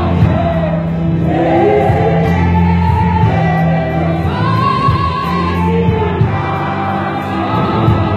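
A church choir sings a gospel song in Zulu, accompanied by a live band with keyboard and bass guitar.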